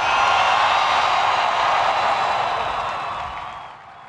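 A huge crowd cheering and clapping in a sustained ovation, with faint whistles over it, swelling at once and dying away near the end.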